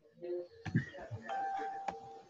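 A two-note chime, a short higher note followed by a lower held note, like a doorbell's ding-dong, with a couple of sharp clicks.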